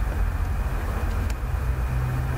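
Steady low background rumble with no speech, and a single faint click a little over a second in.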